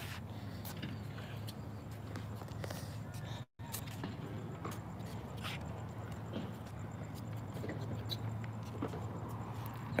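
Faint scattered knocks and steps on a hard tennis court over a steady low hum, as tennis balls are gathered and dropped into a plastic ball crate.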